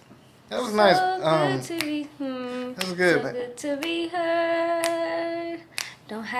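A solo voice singing without accompaniment: a few short phrases and then one long held note, with several sharp clicks in between.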